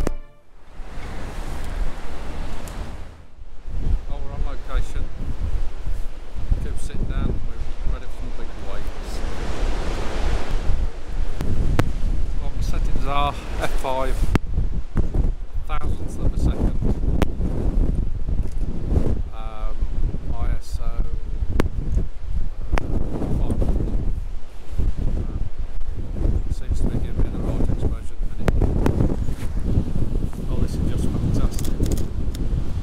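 Strong wind buffeting the microphone over the rush of rough storm surf, a heavy steady noise with a few brief pitched voice-like sounds cutting through.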